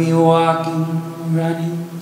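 A man singing long held notes, accompanied by acoustic guitar and cello.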